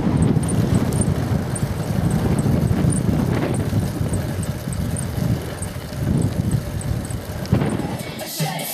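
Wind buffeting the microphone of a camera carried on a moving bicycle, a loud, uneven low rumble mixed with road noise, with a faint high tick repeating about twice a second.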